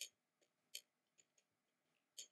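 Faint clicks of a computer mouse button: two sharp clicks about three quarters of a second apart, with a few fainter ones between and after.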